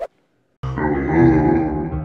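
A man's long, drawn-out vocal groan, a single sustained sound with a wavering pitch. It starts about half a second in, after a moment of silence.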